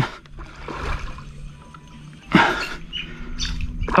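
Water splashing as a hooked cod thrashes at the surface beside the boat. There is one loud splash about two and a half seconds in, over a steady low hum.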